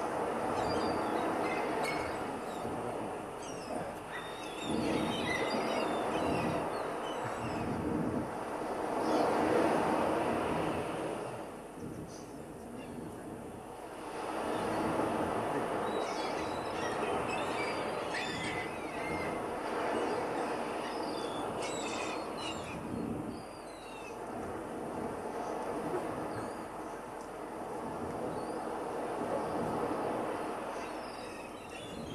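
Recorded outdoor soundscape played as a stage sound effect: birds chirping over a rushing noise that swells and fades every few seconds.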